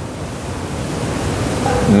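A steady rushing noise, without pitch, close on a clip-on lapel microphone, growing a little louder toward the end.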